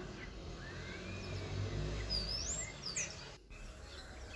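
Faint bird chirps, a few short high calls, over low outdoor background noise; the sound cuts out briefly near the end.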